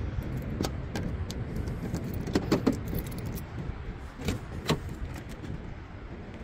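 A bunch of keys jangling: an irregular run of light clicks and rattles, loudest about two and a half seconds in and again near the end, over a steady low rumble.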